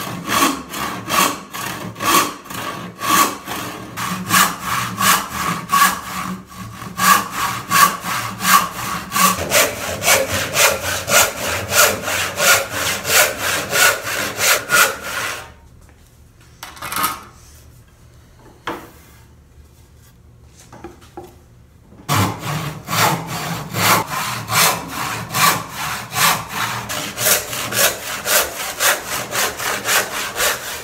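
A hand saw ripping a 2x4 lengthwise, in steady back-and-forth strokes of about two to three a second. The sawing stops for about six seconds midway, with a few faint knocks, then starts again at the same pace.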